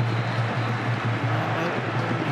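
Steady crowd noise from a packed football stadium, a dense wash of many voices with a constant low hum beneath it.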